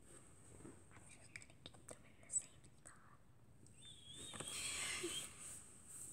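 Soft whispering about two-thirds of the way through, among faint light clicks and taps of plastic slime tubs being handled and moved.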